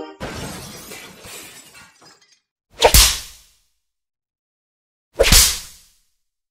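Two bullwhip cracks, about two and a half seconds apart, each a sharp snap that dies away within about half a second. Before them, the noisy boom of an intro sting fades out over about two seconds.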